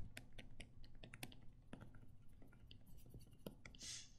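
Near silence broken by faint, scattered clicks and light scratches as ink annotations are erased from a computer slide, with one sharper click right at the start and a soft breath near the end.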